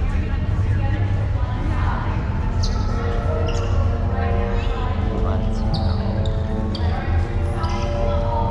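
Hangar-bay soundtrack of a theme-park dark ride: a steady low rumble, with sustained musical tones coming in about three seconds in, over background crowd voices.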